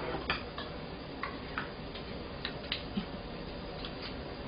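Balls of corn batter deep-frying in hot oil in a wok: a steady sizzle with a few short crackles and pops scattered through it.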